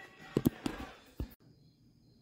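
A few short, sharp knocks in the first second or so, the loudest about half a second in, then the sound cuts off suddenly to near silence.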